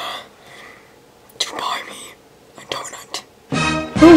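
Quiet whispered speech in short phrases, then background music comes in near the end.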